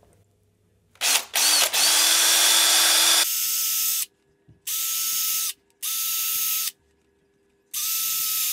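Makita LXT cordless drill boring 2 mm pilot holes into an MDF doorstop: four separate runs of the motor, the first about three seconds long, the other three about a second each, with silence between them.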